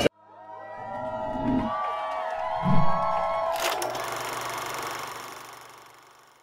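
Animated logo sting: several gliding tones with two soft low thumps, then a sudden hit about three and a half seconds in that fades away.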